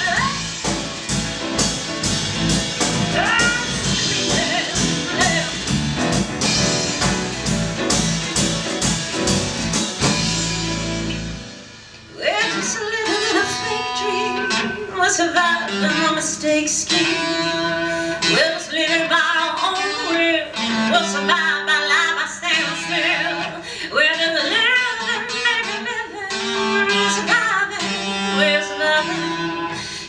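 Female vocalist singing live with a band that includes electric bass. The full band stops suddenly about twelve seconds in, and the song goes on more sparsely, the voice over lighter accompaniment.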